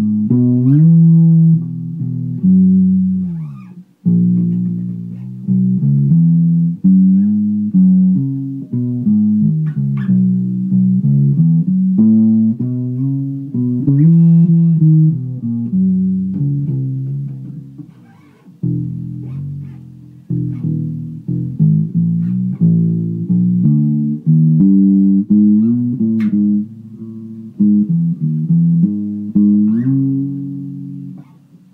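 Squier Affinity Jazz Bass, newly defretted to fretless, being played: a continuous line of low bass notes, several sliding up or down in pitch between notes. Playing drops off briefly about four seconds in and again near eighteen seconds.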